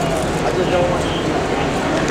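Crowd chatter: many people talking at once in a steady, loud hubbub, with no single voice standing out.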